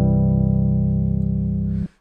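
C major chord held on a keyboard, voiced C and G low with C, E and G above, the first-degree chord of the C major scale. It sounds steadily and cuts off suddenly near the end as the keys are released.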